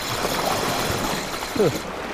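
Seawater washing and rushing against the rocks, a steady noise, with a short grunt from a man near the end.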